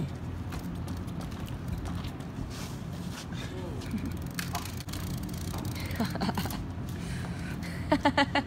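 Faint, distant voices over a steady low background hum, with light scattered clicks.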